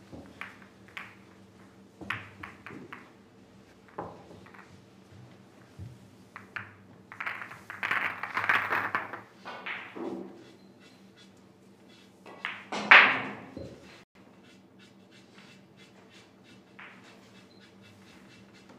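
Pool balls clicking against one another as they are gathered and packed into a triangle rack, with a denser run of clattering about eight seconds in and a sharp, louder knock about thirteen seconds in, over a steady low hum.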